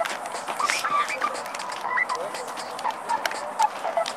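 Several children's voices calling over one another in short overlapping bits, with scattered sharp hand slaps, as two youth soccer teams file past each other slapping hands in a handshake line.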